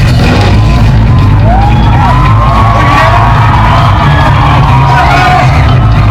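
Live surf-rock band playing loud, with a steady bass line, and crowd voices shouting and whooping over the music from about a second and a half in.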